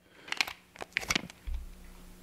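Clear plastic packet of jig heads crinkling and crackling as it is handled, in a few short bursts over the first second or so.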